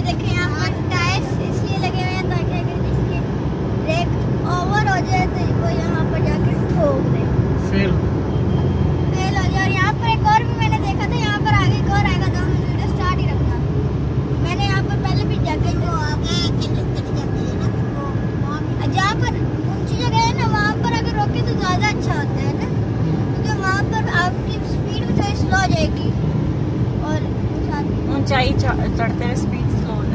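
Steady road and engine rumble inside a moving car's cabin, with indistinct voices talking over it.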